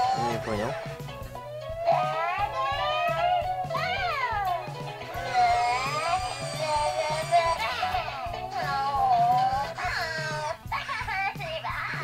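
Hatchimals WoW Llalacorn interactive toy playing its game music through its small speaker, a tinny electronic tune with cartoonish voice sounds that swoop up and down in pitch. It is the toy's press-at-the-right-moment game in progress.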